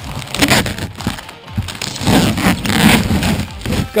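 Sticky Tuck Tape packing tape being peeled off a painted plywood boat hull. It tears away with a ripping rasp, a short pull about half a second in and a longer one from about two seconds.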